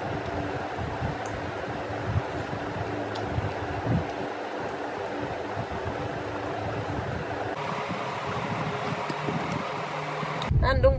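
A steady fan-like rushing runs throughout, with soft, irregular low knocks and mouth sounds from someone eating by hand and chewing.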